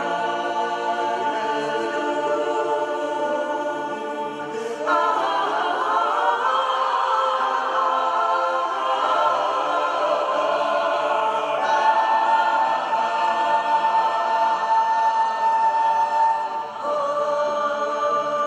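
Mixed choir of men and women singing a cappella in sustained, held chords. The sound grows louder about five seconds in, and a long high note is held before the chord changes near the end.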